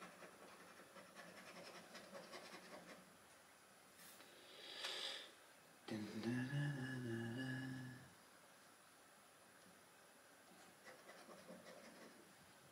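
A coin scratching the silver coating off a scratchcard in quick rubbing strokes, faint. About five seconds in comes a short breathy hiss, then a two-second wordless hum from a man, the loudest sound; faint scratching starts again near the end.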